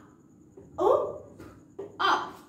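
A woman's voice giving short, separate phonics sounds rather than running speech: one clipped syllable about a second in, then a brief sound just before the next syllable begins at the end.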